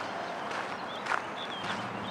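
Outdoor ambience with a few soft footsteps on a paved path and several short, faint bird chirps.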